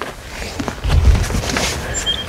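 Rummaging in a car's back seat: rustling and light handling noises as items are moved about, over a low rumble that comes and goes.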